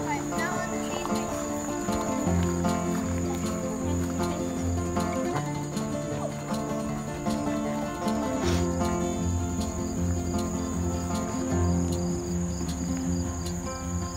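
Background music with sustained chords over a bass line that changes every second or so, with a steady high cricket trill underneath.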